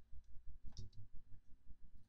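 A single faint computer mouse click a little under a second in, over faint, irregular low thumps.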